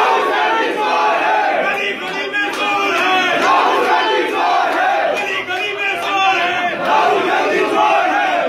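A crowd of men shouting political slogans together, many voices at once, loud and unbroken.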